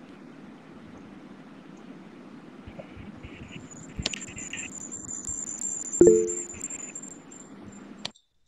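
Steady low hum of background room noise through a laptop microphone. A sharp click comes about four seconds in, a faint high whine runs for a few seconds, and a brief loud pitched sound comes about six seconds in. The sound cuts off abruptly at the very end.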